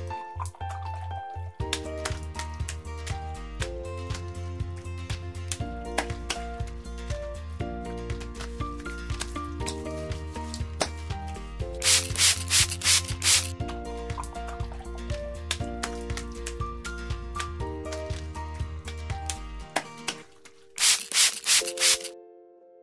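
A sponge scrubbing a plastic toy-kitchen counter in quick rubbing strokes, about four a second, in three short spells: at the start, about twelve seconds in, and near the end. Background music with a steady beat and held notes plays throughout.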